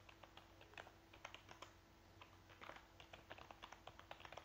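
Faint, irregular clicking of computer keyboard keys, several taps a second with short pauses.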